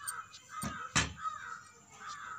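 A bird calling with short harsh calls, about four in two seconds, with a sharp click about a second in.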